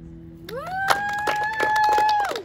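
A small group clapping, with one long high whoop that sweeps up, holds for about a second and a half and then drops off.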